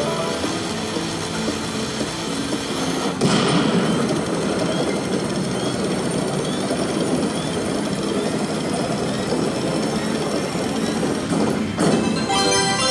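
Slot machine dynamite-explosion sound effect: a fizzing hiss, then a louder blast about three seconds in, followed by a long rumbling, rattling noise that gives way to the game's music right at the end.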